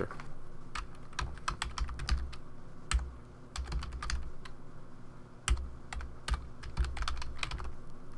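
Typing on a computer keyboard: a run of irregular key clicks, in uneven bursts with short gaps.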